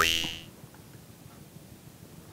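A short buzzy sound-effect sting that fades out within about half a second, followed by faint room tone.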